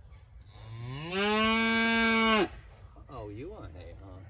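A calf moos once: one long call that rises in pitch, holds steady for over a second, then cuts off sharply.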